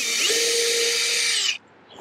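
Cordless drill with a hex nut-driver bit backing a roofing screw out of a metal roof seam: the motor whine rises a little as it spins up, runs steadily, then cuts off about a second and a half in.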